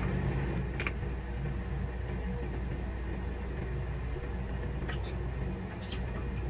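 Steady low hum with a faint hiss of tap water refilling the aquarium through a Python water-changer hose, and a couple of faint clicks.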